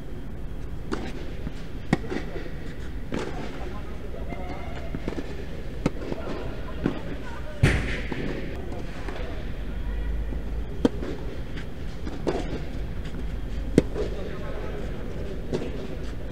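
A tennis rally on a clay court: sharp pops of racket strings hitting the ball and the ball bouncing, every second or two, the loudest about halfway through. The hits echo briefly in a large air-dome hall over a low steady hum.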